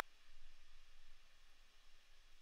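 Faint, steady fan noise left after CEDAR sdnx noise suppression at −10 dB: only a thin, even hiss remains.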